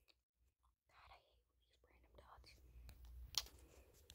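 Near silence: room tone, with faint soft sounds in the second half and one short click about three and a half seconds in.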